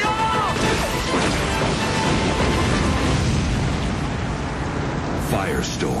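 Movie-trailer sound mix: a loud, steady wash of fire and blast sound effects under music. Short voices come at the very start and again near the end.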